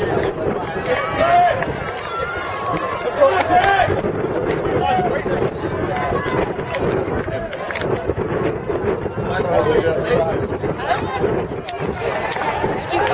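Voices of spectators talking over a steady background of crowd noise, with a few sharp clicks.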